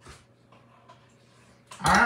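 Quiet room tone with a light tap at the start, then a person's voice starting near the end.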